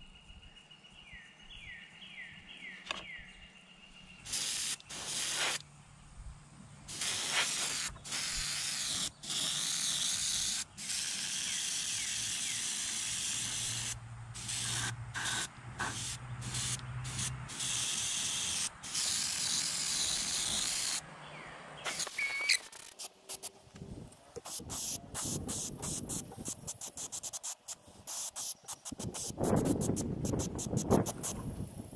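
An airbrush spraying paint in bursts of hiss as the trigger is pressed and released, laying down a base coat. The bursts run several seconds long in the middle and turn into rapid short puffs near the end.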